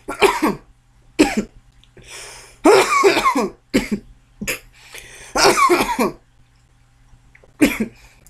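A man coughing in a fit: about seven harsh coughs spread over several seconds, some longer and some short, with brief pauses between them.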